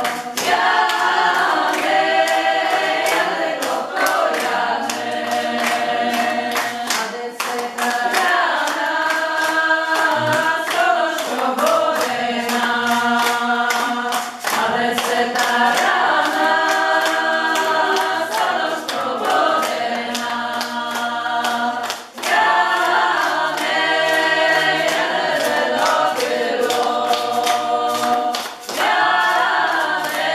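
A group of mostly women's voices sings a Kurpie folk song unaccompanied, in repeated phrases of a few seconds with short breaks between them. Sharp, regular beats run through the singing.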